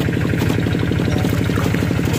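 A small engine idling steadily, heard as a fast, even run of low firing pulses.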